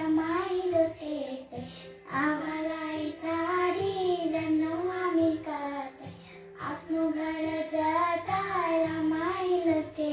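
A children's nursery-rhyme song: a child's voice singing a melody over a simple backing track with a repeating bass line, in phrases with short breaks.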